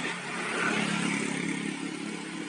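Small motor scooter engines running as scooters ride along a street: a steady low engine hum over road noise, swelling slightly in the first second and easing off toward the end.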